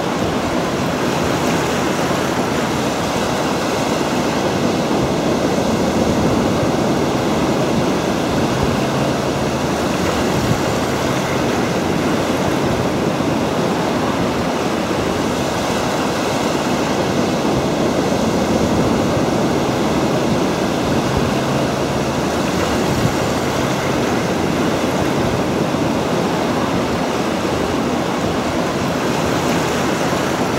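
Rough sea surf: waves breaking in a steady, unbroken rush, with wind on the microphone.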